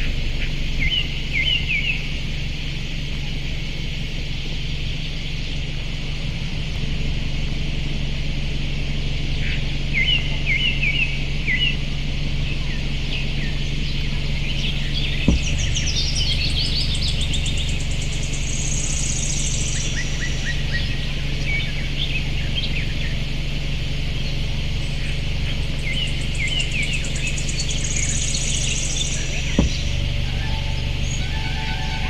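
Birds calling in short repeated chirping phrases over a steady low hum.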